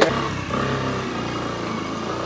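Small motorcycle engine running steadily.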